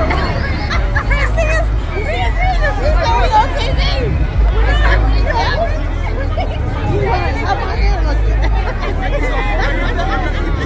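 Crowd hubbub: many voices talking and calling out at once over a low, uneven rumble.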